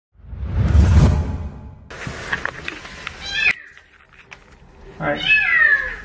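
A whoosh swells and fades over the first two seconds. Then a cat trapped in a storm drain meows: a short rising meow about three seconds in and a longer falling meow near the end.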